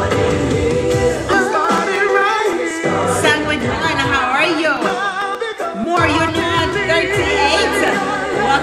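A woman singing into a handheld karaoke microphone over a backing track, her voice wavering and sliding between notes.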